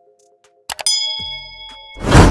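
Two quick click sound effects about two-thirds of a second in, then a bell-like ding that rings on in several steady tones and fades. This is a subscribe-button and notification-bell sound effect.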